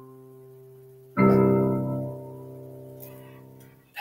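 Piano playing the final chord of a slow piece. An earlier chord fades out, then the last chord is struck about a second in and held on the damper pedal, dying away until it cuts off just before the end as the pedal is lifted.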